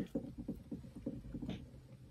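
A faint, quick patter of soft taps, about seven a second, fading out near the end.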